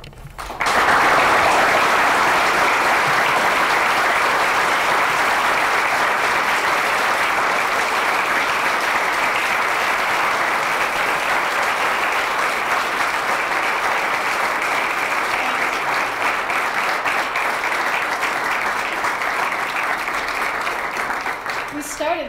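Audience applauding after a speech: many hands clapping together, starting suddenly just under a second in and keeping up for about twenty seconds, slowly easing off toward the end.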